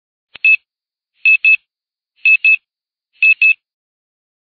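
Electronic beeps in quick pairs, four double beeps about a second apart, each beep short and high-pitched.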